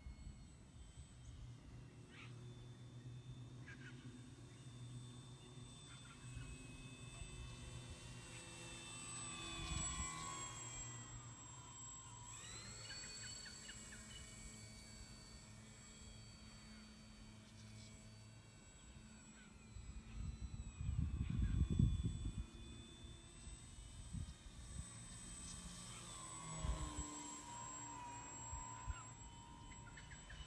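Small electric RC model plane, a Sport Cub S, its motor and propeller whining faintly overhead, the pitch rising and falling as it changes throttle and passes by. A brief low buffeting about two-thirds of the way in.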